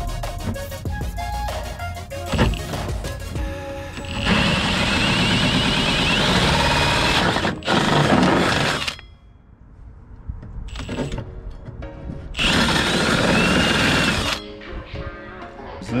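Cordless drill with a hole saw cutting through the fibreglass of a boat's centre console, in two long runs with a pause between them.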